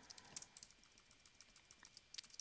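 Faint, scattered key presses on a computer keyboard, a few of them close together in the first half second.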